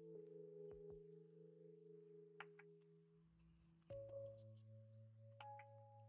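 Faint background music of soft held tones that change together to a new chord about four seconds in, with a few light clicks over it.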